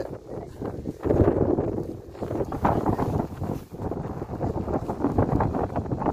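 Wind buffeting the phone's microphone in uneven gusts, a low rumble that swells and drops throughout.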